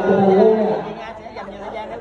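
Close conversational speech for about the first second, then quieter chatter of many voices in a large hall.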